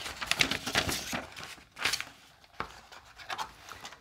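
Folded paper instruction sheet rustling and crinkling as it is handled, unfolded and laid down on a wooden table, in a run of short rustles that is busiest in the first second.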